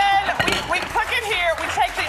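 People talking over one another: indistinct overlapping speech.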